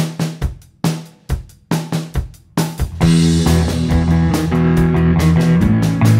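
Start of an indie surf-rock song. The drum kit plays a sparse pattern of kick and snare hits on its own. About halfway through, the rest of the band comes in with sustained bass and guitar, and the sound turns full and steady.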